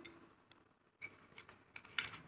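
Peeled garlic cloves dropped into a steel mixer-grinder jar onto chopped greens, landing with a few faint, light clicks from about a second in.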